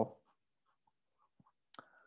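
Felt-tip marker writing on paper: faint, sparse scratches and a small tap of the pen tip, clearest near the end.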